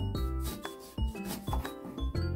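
A kitchen knife sawing through a lemon on a cutting board, a few rasping strokes, about half a second in and again around a second and a half in, over background music with a bass line.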